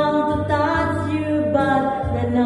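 A person singing long, drawn-out notes into a microphone over backing music. The note changes pitch about half a second in and again shortly before the end.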